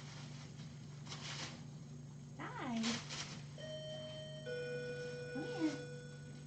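An electronic signal of two steady held tones, a higher one starting a little past the middle and a lower one joining about a second later, over a steady low hum. Two short sliding vocal calls fall before and during the tones, the first about two and a half seconds in and the second near the end.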